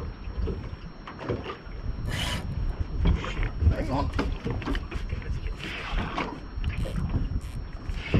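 Deck noise on a small boat: irregular knocks, rubbing and clatter of gear over a low rumble, with a noisy scrape or rustle about two seconds in.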